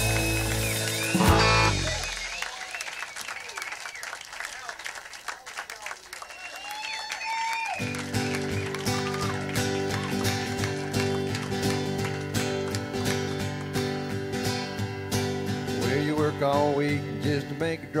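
A song ends with a final full-band chord about a second in, followed by a few seconds of crowd voices and whoops. About eight seconds in, an acoustic guitar starts strumming a steady rhythm, kicking off the next country song.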